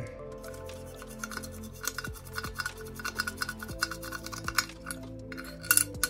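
Toothbrush scrubbing a lye-softened chip held in metal tweezers over a ceramic dish: quick scratching with small clinks, a louder flurry near the end. Quiet background music plays underneath.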